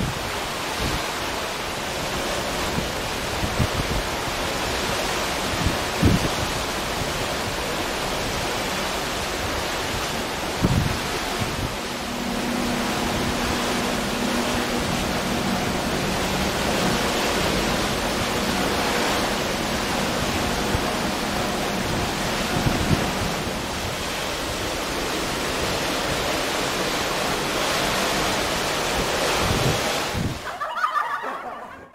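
Steady rush of wind buffeting the microphone, mixed with the wash of the sea churned up by a moving ship, with a few brief low gusts thumping the microphone.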